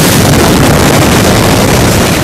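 Blast wave of a huge explosion hitting the camera microphone: a loud, unbroken rush of noise with no pitch or rhythm.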